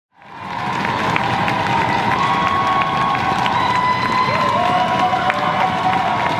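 Audience cheering and applauding, with sharp individual claps and high held shouts through a steady wash of crowd noise; it fades in over the first second.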